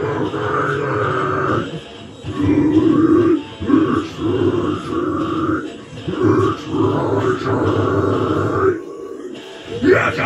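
A male vocalist growling harsh, unclean metal vocals into a handheld microphone, in several held phrases, breaking off briefly near the end.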